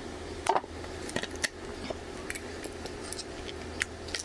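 Scattered sharp clicks and small scrapes of a suction cup and plastic pry pick working at the edge of a Realme C15's cracked display, which is still stiff and not yet coming free. The loudest click comes about half a second in.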